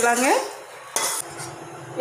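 A steel spoon stirring vegetable idiyappam (rice noodles) in a stainless steel pan, with one short metallic scrape about a second in.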